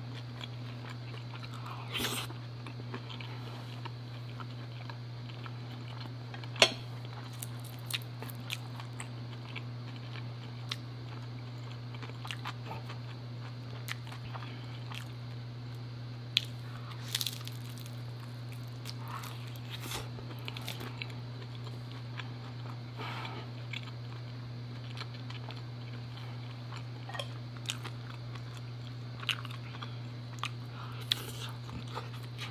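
A person eating close to the microphone: scattered crisp crunches as she bites a fried egg roll, with quieter chewing between them. A steady low hum runs underneath.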